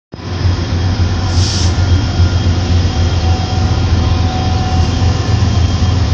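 Union Pacific freight train's diesel locomotives, an EMD SD70M leading a GE AC4400CW, running past with a loud, steady low rumble.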